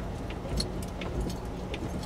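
A car's engine and road noise heard from inside the cabin while it rolls slowly through a car park: a steady low rumble with scattered light clicks and rattles.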